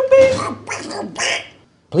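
A gargling, duck-like cartoon voice, like a Donald Duck impression, with one note held briefly before it breaks off about one and a half seconds in.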